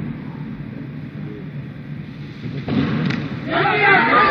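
Arena crowd noise, low at first, swelling about two and a half seconds in and breaking into loud cheering and shouting near the end as a 171 kg snatch is lifted overhead.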